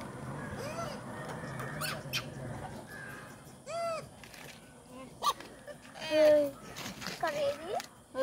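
Outdoor ambience with a low murmur of distant voices, broken by several short, arching, high-pitched calls, the loudest around six seconds in, and a few sharp clicks.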